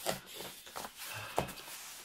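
Hands handling a folding fabric solar charger on a wooden table: fabric rustling with a few light taps, one sharp tap about one and a half seconds in.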